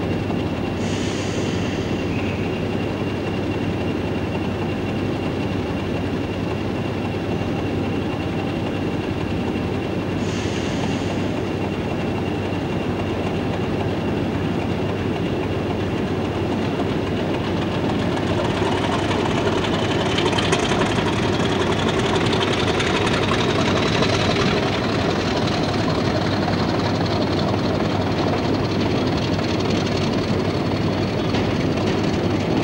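British Rail Class 50 diesel locomotive's English Electric V16 engine running steadily at the platform. It grows louder from about eighteen seconds in with a rising whine, the engine being opened up, and exhaust smoke rises from the roof. There are two short hisses, about a second in and about ten seconds in.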